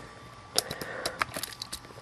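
Small, sharp clicks and taps of a hinged plastic Bakugan toy figure being unfolded and positioned by hand, coming irregularly about half a dozen times.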